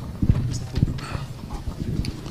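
A few irregular low knocks and thumps, spaced unevenly through the pause.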